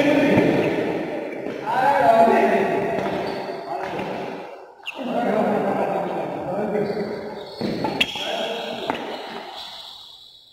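Badminton rackets striking a shuttlecock during a rally, sharp smacks with the two clearest about a second apart near the end, heard over people's voices in a large echoing hall.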